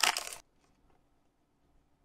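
Foil booster-pack wrapper crinkling as it is torn open, cut off suddenly about half a second in, then near silence.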